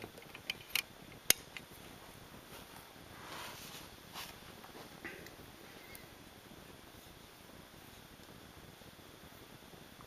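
Small sharp clicks from the magnetically held side doors of a plastic O-gauge model locomotive being snapped open and shut, four in the first second and a half. Then faint handling rustle and one more click.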